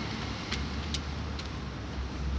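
Low steady rumble of outdoor street noise, with a few light taps of footsteps on the pavement about half a second apart.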